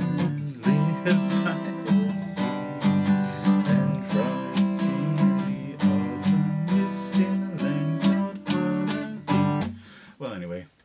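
Acoustic guitar strummed in a steady rhythm of chords, with a man singing along. The playing stops and rings out just before the end; the player later says he botched the last B minor chord.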